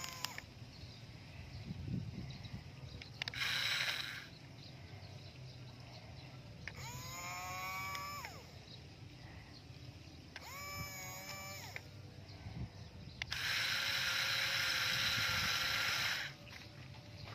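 Small electric motor of a toy RC dump truck whirring loudly and steadily over the last three seconds. Before it come shorter sounds: a brief noisy burst, then two pitched calls that rise and fall in pitch.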